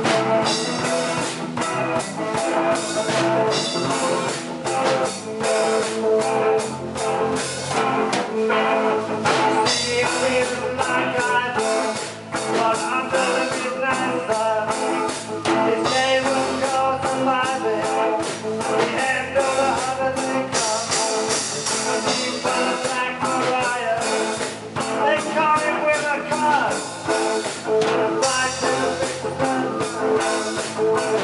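A live rock band plays: electric guitar, electric bass guitar and drum kit, with a man singing into a microphone.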